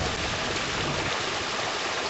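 Water coming down from above with great force, a steady, even rush with no breaks.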